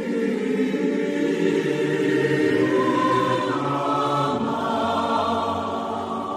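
Choral music: a choir singing long held chords, moving to a new chord about three and a half seconds in.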